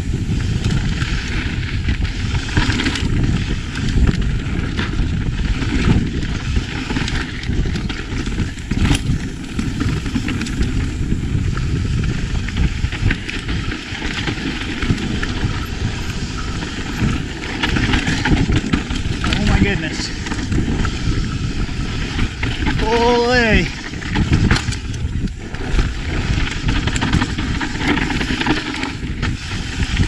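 Enduro mountain bike ridden fast down a dry, loose, dusty trail: a constant rush of tyres over dirt and wind, with frequent knocks and rattles from the bike. A rider whoops once, about 23 seconds in.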